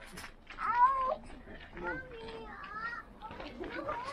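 Voices of people walking, with high-pitched child's calls that rise and fall in short bursts.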